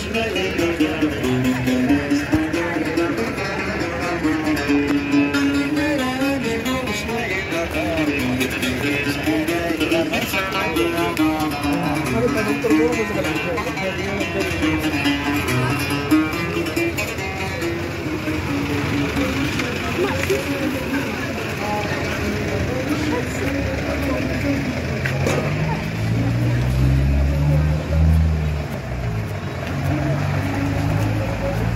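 A street musician singing to a strummed plucked string instrument, the voice wavering in pitch and clearest in the first half. A low engine sound rises and falls near the end.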